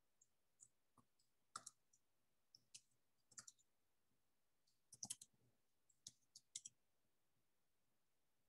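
Faint, irregular clicking of computer keyboard keys being typed, in short clusters of a few keystrokes.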